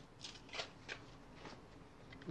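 Faint, brief rustles of packaging being handled, four or five soft scrapes spread through the moment.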